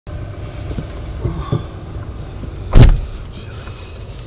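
Inside a vehicle cab: a steady low rumble of the vehicle's running engine, with a few soft knocks in the first second and a half. One loud, short thump comes a little before the three-second mark.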